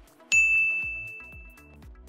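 A single bright ding about a third of a second in, ringing out and fading over about a second and a half. Background music with a steady beat plays under it.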